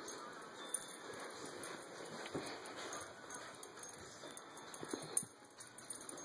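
A miniature schnauzer tussling with a stuffed panda toy: irregular scuffling and rustling, with light metallic jingling in scattered small ticks.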